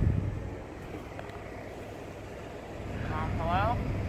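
Low, steady rumble of a car heard from inside the cabin, a little louder for the first half-second. A faint voice comes in near the end.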